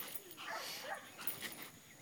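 Faint vocalizing from a young Belgian Malinois while she grips a decoy's bite suit, with faint voices behind.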